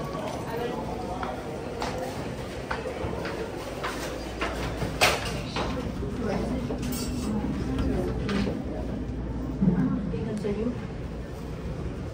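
Footsteps clicking on a hard floor, roughly one to two a second, over indistinct voices, with a sharper knock about five seconds in.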